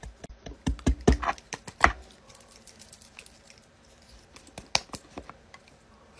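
Scattered light clicks and taps of a plastic powder compact being handled with long acrylic nails and a makeup brush. There are a few sharper taps in the first two seconds and a quick pair near five seconds.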